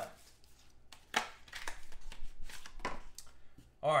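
Hard plastic graded card slabs clicking and knocking as they are handled: a run of irregular sharp clicks, the loudest about a second in.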